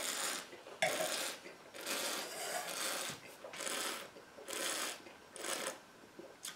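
Repeated slurping hiss as a wine taster draws air through a mouthful of red wine to aerate it on the palate, about once a second.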